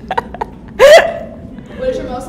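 A young woman laughing: a few short breathy bursts, then one loud, sharp burst of laughter just under a second in.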